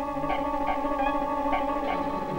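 Background film music: sustained tones under a slow, slightly wavering melody line.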